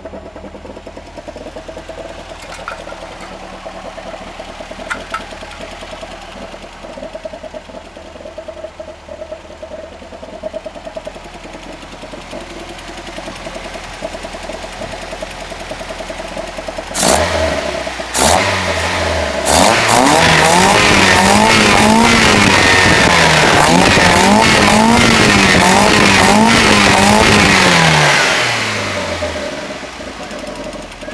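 VW Golf Mk1's 1.8 16V four-cylinder engine, breathing through four open-bellmouth Honda CBR900 motorcycle carburettors, idling steadily. About 17 seconds in, the throttle is blipped twice. It is then held at high revs for about eight seconds, the revs rising and falling three times, before dropping back to idle near the end.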